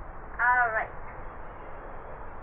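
Speech only: a woman says a single word, "right", about half a second in, over a steady background hiss.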